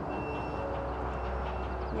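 Construction work with a crane: a steady low machinery hum with a faint steady whine above it.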